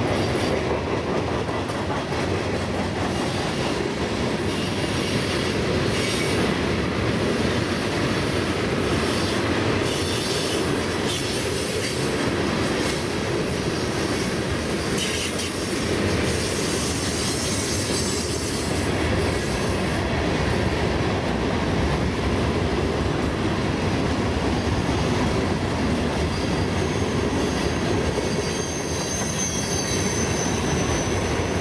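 Freight train cars (tank cars, covered hoppers, boxcars and gondolas) rolling past close by at a steady speed: a continuous, even rumble of steel wheels on the rails.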